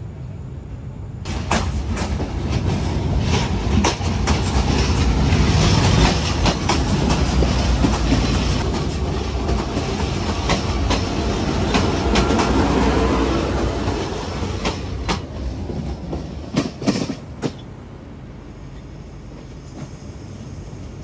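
KTM diesel multiple unit running past close alongside on the adjacent track, its wheels clacking over rail joints. The passing noise builds about a second in and dies away in the last few seconds.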